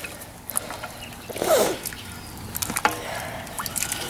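Long wooden paddle stirring a big metal pot of thick chili, with scattered short knocks and scrapes of wood against the pot and through the mix.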